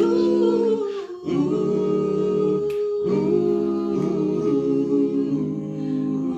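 Small group of voices singing a cappella in close harmony, holding long chords without clear words. The chords break off briefly just after a second in and again around three seconds in, then resume.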